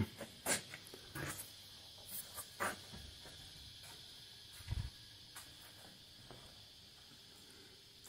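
Quiet room tone with scattered faint clicks and rustles and one soft thump about five seconds in: handling and movement noise from a handheld camera being carried around a car.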